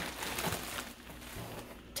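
Plastic bag crinkling and rustling as it is handled, strongest in the first second and then fading.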